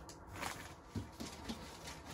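Faint shuffling and handling sounds of a person moving on carpet and reaching into a cardboard box, with a few soft knocks.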